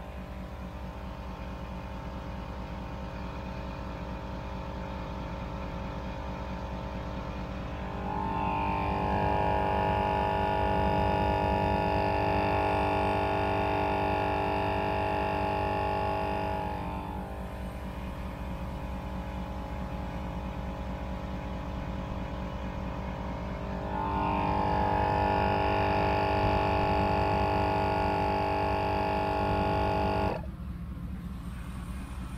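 GSPSCN dual-cylinder 12 V portable air compressor running steadily, powered straight off the vehicle battery, inflating an off-road tire toward 35 psi. It makes a continuous hum with a rapid pulsing underneath, and grows louder from about eight to seventeen seconds in and again from about twenty-four seconds on.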